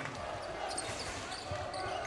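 Basketball arena ambience: a crowd murmuring in the hall, with a few thumps of a basketball bouncing on the court.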